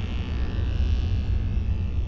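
Deep, steady rumbling drone of a cinematic logo-intro sound effect, the fading tail of a whoosh-and-impact sting.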